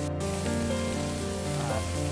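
Background music with long held notes over a faint sizzle of vegetables frying in oil in an iron kadai.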